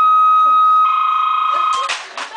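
Loud, steady electronic beep from a telephone handset. About a second in it becomes a rougher, fluttering two-tone sound, then cuts off suddenly just before the end.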